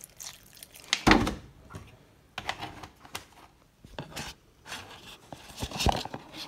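Scattered scrapes and knocks of a table knife scooping butter from a tub for a bowl of potatoes, with a louder thump about a second in.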